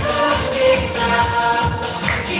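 Upbeat dance music with a steady beat, about two beats a second.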